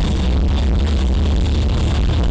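Live rock band playing loud amplified music, with electric guitar, steady and continuous. The heavy bass distorts the recording.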